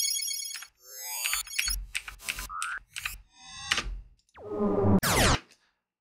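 A quick run of short synthesized sci-fi zap and laser sound effects, each auditioned for about a second or less and cut off as the next one starts: warbling up-and-down pitch sweeps, rapid chirps, and near the end a falling laser sweep.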